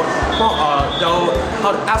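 A young man talking close to the microphone in mixed Cantonese and English, with dull low thumps under his voice every half second or so and a faint high whine that comes and goes.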